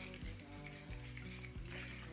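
Facial mist from a pump spray bottle sprayed at the face in several short hisses, over quiet background music.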